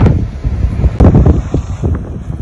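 Wind gusting on the microphone, loud and uneven, with a brief click about a second in.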